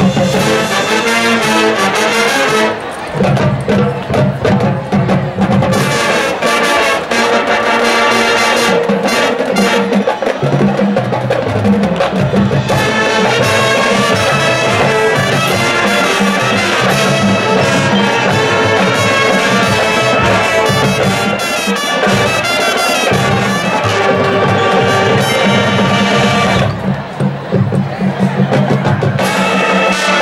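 High school marching band playing its field show music: the brass section holding loud chords over percussion. The full sound thins briefly about three seconds in and again near the end before the brass comes back in.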